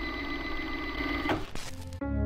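VCR rewinding a videotape: a steady high whine over tape hiss that cuts off about one and a half seconds in.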